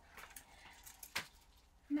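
Quiet room with faint rustling from handling, and one sharp click about a second in.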